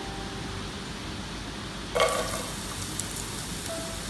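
Ghee sizzling faintly in a saucepan, with a short louder sizzle about halfway through as pieces are dropped into the hot fat.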